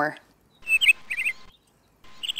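Small birds chirping: two short clusters of quick high chirps, about half a second apart, followed by a brief silent gap.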